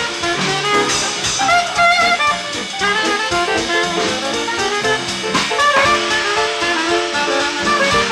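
Live small-group jazz: a soprano saxophone playing a wavering melodic line over piano and drums.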